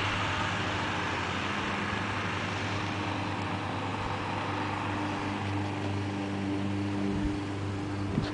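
Road vehicle noise: a steady low engine hum, with a wash of car noise that is louder in the first few seconds and fades away after about five seconds.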